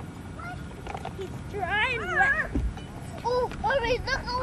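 High-pitched children's voices calling and shouting in short bursts, the words unclear, over a low steady rumble.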